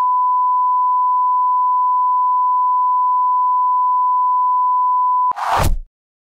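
Steady 1 kHz reference tone, the bars-and-tone signal of a television test card. It holds unchanged for about five seconds and then cuts off. A short noisy burst follows near the end, falling in pitch before it stops.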